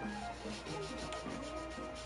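A paintbrush rubbing black acrylic gesso along the thin edge of a stretched canvas in short scratchy strokes, with quiet background music.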